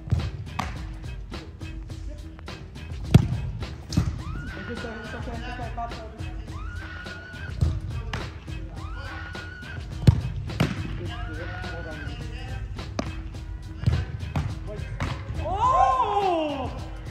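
Background music with a steady fast beat. Over it come several sharp thumps of a soccer ball being struck and caught by a gloved goalkeeper, the loudest about three seconds in and again about ten seconds in.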